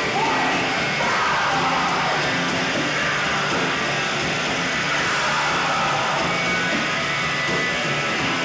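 Live rock band playing loud on a club stage: distorted electric guitar and drums, with the singer shouting into the microphone near the start, recorded on a camcorder's built-in microphone.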